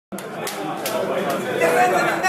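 Indistinct chatter of several men talking over one another in a large room.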